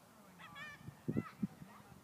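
Geese honking, two or three short calls in quick succession, with a few low thumps about a second in.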